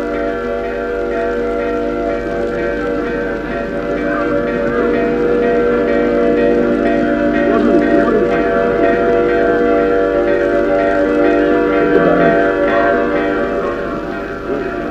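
Music: a sustained chord of several steady tones is held throughout, with wavering, voice-like lines moving over it. It grows slightly louder from about four seconds in.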